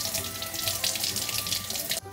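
Kitchen tap running, water splashing into a stainless steel sink over a peach held under the stream to rinse it.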